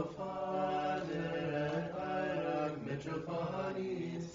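Men's voices singing Orthodox liturgical chant in unison, holding long drawn-out notes that move slowly from pitch to pitch, with a short break near three seconds in.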